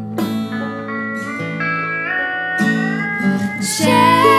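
Instrumental break in an acoustic folk-country song: plucked acoustic guitar and banjo, with long held notes that glide up in pitch in slide-guitar style.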